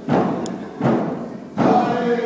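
A drum beaten steadily, about one beat every three-quarters of a second, each beat echoing in a gymnasium. A group of voices starts singing near the end, keeping time with the drum.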